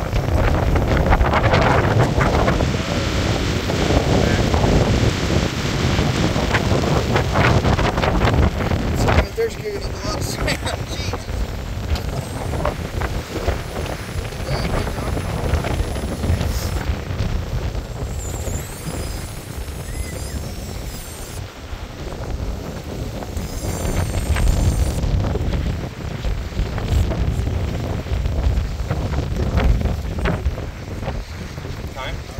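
Strong wind buffeting the microphone: a loud, gusting low rumble, heaviest in the first nine seconds and easing somewhat after.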